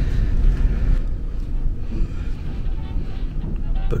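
Steady low rumble of a cruise ship's machinery heard in an inside corridor, mixed with wind and handling noise on a handheld camera's microphone as it is carried along.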